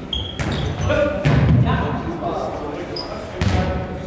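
A Faustball being struck with the arm and bouncing on a sports hall floor during a rally: a few sharp thuds echoing in the hall, the loudest about a second in.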